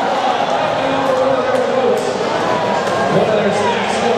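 Steady, loud din of a large crowd in an indoor arena, many voices talking and shouting at once, with a few faint sharp knocks.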